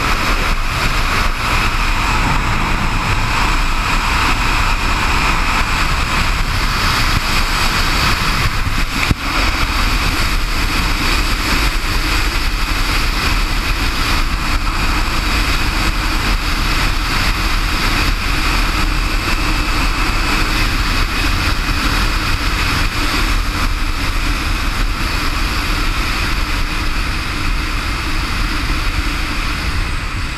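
Flying Fox XXL zipline trolley running fast along the steel cable, a loud, steady whirring whine, with wind rushing over the microphone underneath. One sharp click about nine seconds in.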